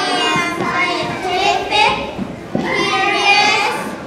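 Young children's high-pitched voices reading aloud into a handheld microphone, in phrases with short breaks.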